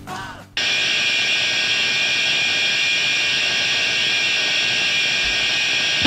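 A steady, harsh hiss with a high drone in it starts abruptly about half a second in and holds unchanged, like static or a noise intro to a track.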